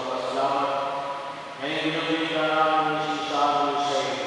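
Liturgical chant sung at Mass: long held, slowly changing notes, with a new phrase starting about one and a half seconds in.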